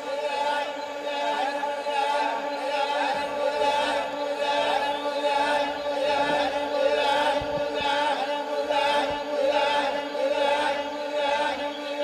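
Chant-like group singing over a steady drone: the soundtrack of a promotional video, played over a hall's loudspeakers.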